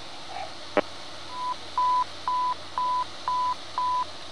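Fire-dispatch radio alert tone heard over a scanner: a sharp click, then a series of six short, steady single-pitch beeps, about two a second. The tone marks a dispatch announcement about to be broadcast.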